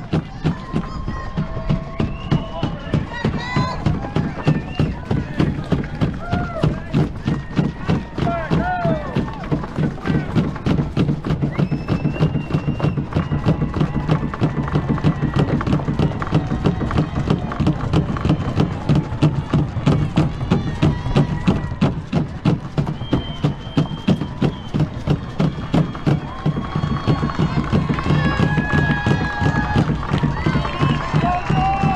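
Running footsteps of canoe racers carrying a canoe along pavement, heard as rapid, regular thuds jolting through the hull. Over them, spectators lining the street cheer and shout.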